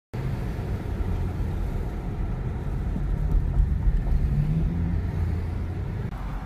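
Car engine and road noise heard from inside the cabin while driving: a steady low rumble, with the engine's pitch rising slightly about four seconds in.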